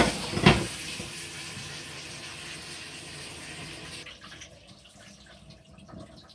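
Kitchen tap running water into a stainless steel bowl of raw chicken pieces as they are rinsed, briefly louder twice near the start. The running water stops about four seconds in, leaving faint handling sounds.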